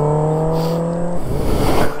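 A motor vehicle passing on the road: a steady engine note, then a rush of tyre and wind noise as it goes by, about a second in.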